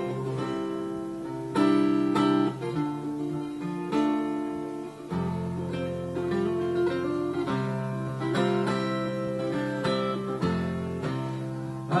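Solo acoustic guitar playing an instrumental break: a run of plucked notes over low bass notes that change every second or two.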